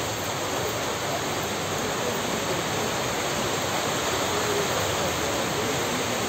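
Steady rushing outdoor noise on the microphone, with faint murmuring voices of a gathered crowd.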